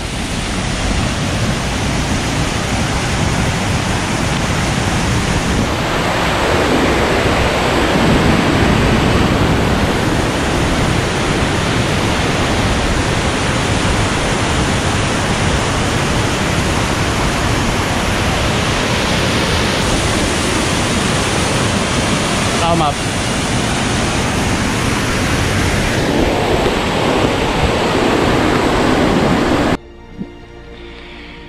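Waterfall rushing steadily and loudly, likely the Giessbach falls; the sound shifts slightly at cuts about 6, 20 and 26 seconds in.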